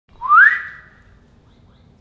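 A single short whistle that rises in pitch, then holds and fades out within about a second.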